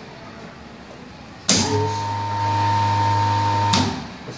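A magnetic contactor clacks in about one and a half seconds in, and a small electric motor runs with a steady mains hum. Just before the end another clack as the contactor drops out, and the hum dies away as the motor stops.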